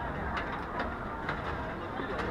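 Busy pedestrian street ambience: a low murmur of passers-by with a run of light, sharp clicks about twice a second.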